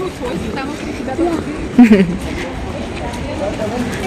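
Voices speaking in short snatches over steady outdoor background noise, with a louder exclamation falling in pitch about two seconds in.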